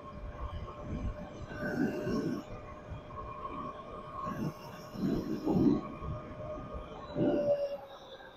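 Tuttio Soleil 01 electric dirt bike's motor giving a steady whine while running near its top speed of about 35 mph, with wind buffeting the microphone in uneven gusts.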